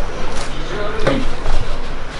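A man breathing out hard in short bursts, about half a second in and again about a second in, with a brief voiced grunt, as he presses dumbbells on an incline bench.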